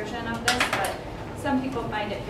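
Indistinct voices, with a brief metallic clatter of a spatula and metal tray about half a second in as chopped food is scraped into a blender.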